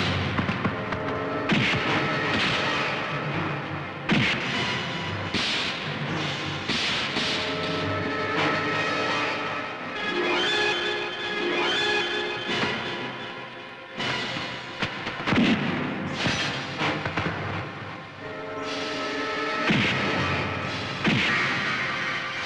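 Dramatic film background score with repeated punch and impact sound effects of a fight scene, the hits landing every few seconds over the music.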